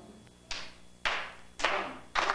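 Three sharp percussive strokes about half a second apart, each a hissy attack that fades quickly: the opening beats of a rhythm that carries on.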